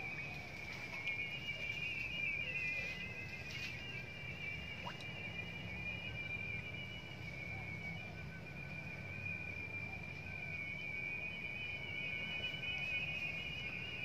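Insects trilling continuously at a high, slightly wavering pitch, over a steady low rumble.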